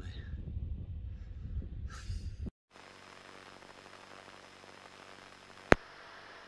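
Wind buffeting the microphone with a low rumble, then after a cut a steady, muffled hum from the Piper Tri-Pacer's running engine as heard through the cockpit headset and intercom, with one sharp click near the end, the push-to-talk key before a radio call.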